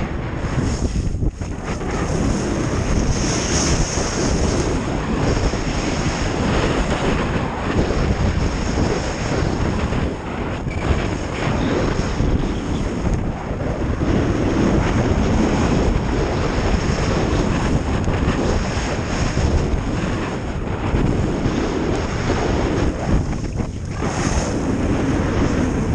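Wind rushing over the microphone of a camera carried by a skier running down a groomed piste, mixed with the skis sliding over packed snow, swelling and easing slightly through the turns.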